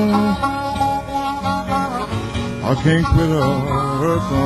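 Piedmont blues on acoustic guitar and harmonica: the guitar fingerpicked under the harmonica's sliding, held notes in an instrumental passage between sung verses.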